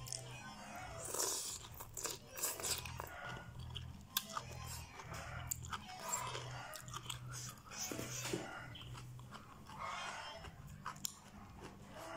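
A person eating noodles with chopsticks: repeated wet slurps and chewing in an irregular rhythm.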